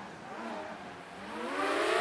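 A motor whine whose tones rise in pitch over the last second, with a hiss that swells along with it.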